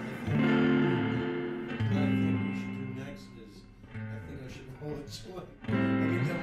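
Guitar chords struck one at a time, about every two seconds, each left to ring out and fade before the next.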